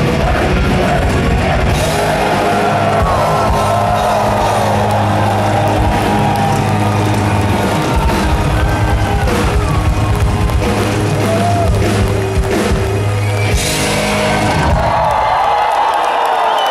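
Heavy metal band playing live in an arena, with distorted guitars and bass holding long ringing chords while the crowd yells and whoops. The band's sound drops away about a second before the end, leaving the crowd cheering.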